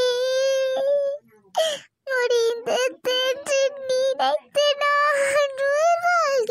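A high-pitched voice crying and wailing in long, wavering held notes, with a short break between cries about a second and a half in.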